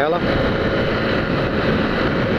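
Steady rush of wind on the microphone over a Yamaha Factor 150's single-cylinder engine, cruising at close to 100 km/h.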